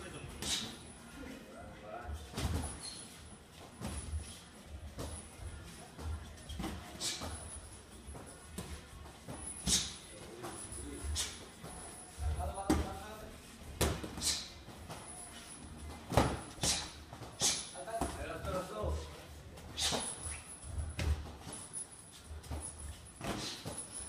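Boxing sparring: irregular sharp smacks of gloved punches and footwork on the ring canvas, with voices in the gym in between.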